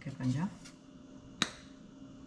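A brief voice sound in the first half second, then a single sharp click about one and a half seconds in, over a faint steady hum.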